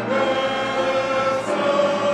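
Choir singing a slow hymn with violins and piano accompanying. One long chord is held, moving to a new one about one and a half seconds in.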